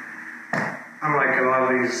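A man talking, after a short pause broken by one brief sharp click about half a second in.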